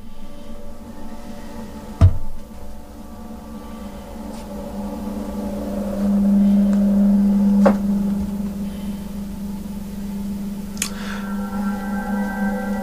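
A steady, low held drone of several tones, louder for a couple of seconds in the middle. A sharp knock cuts through about two seconds in and another near eight seconds, and higher held tones join near the end.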